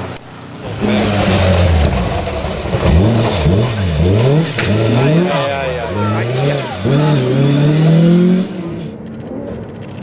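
Classic Ford Escort rally car's engine revving hard on a gravel stage, the revs climbing and dropping sharply several times in quick succession as the driver works the throttle and gears through the corner, then holding high before dropping away about a second and a half before the end.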